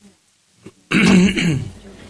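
A person clearing their throat once, loudly, about a second in, lasting about half a second.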